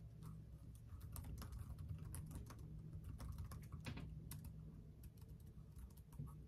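Typing on a computer keyboard: quick, irregular key clicks, busiest in the middle and thinning out toward the end, over a faint steady low hum.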